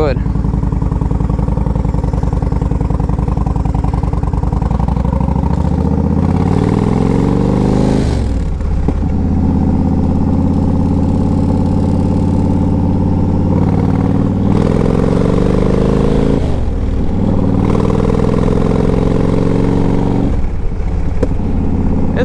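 A 2012 Yamaha Road Star's 1700 cc V-twin engine running under way, heard from the rider's seat. The engine note climbs as the bike accelerates and drops sharply three times, as at gear changes, then climbs again.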